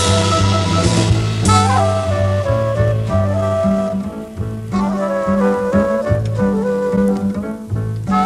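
Modern jazz quintet playing: one wind instrument carries the melody in long held notes over a double bass line.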